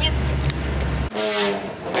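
A steady low drone of a car cabin while driving. It cuts off about a second in and is followed by a car horn sounding once for under a second.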